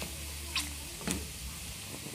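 Diced pork fatback frying in its own rendered fat: a steady, gentle sizzle, with a couple of light clicks as a wooden spoon stirs the pieces. The fat is rendering calmly into torresmo, without popping or spattering.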